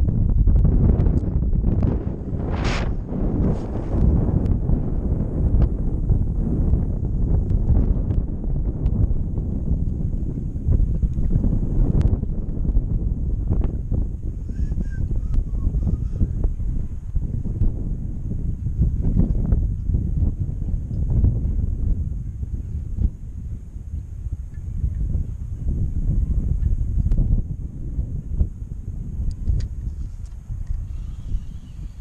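Wind buffeting the camera's microphone: a loud low rumble that rises and falls with the gusts. A brief sharp sound cuts through about three seconds in.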